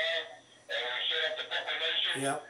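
A voice talking over a mobile phone on speaker, thin telephone-quality sound, with a short pause just under a second in.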